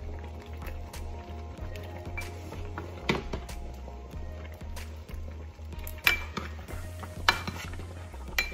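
A metal spoon stirring soup in a pot, with three sharp clinks of the spoon against the pot about three, six and seven seconds in, over soft background music.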